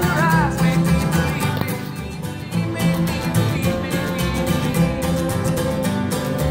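Acoustic bluegrass string band playing: strummed acoustic guitar, banjo, fiddle and upright bass in a steady up-tempo groove.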